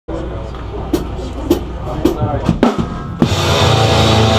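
Live metal band starting a song: about five drum hits roughly half a second apart over a sustained low amplifier drone, then the full band comes in loud a little after three seconds in.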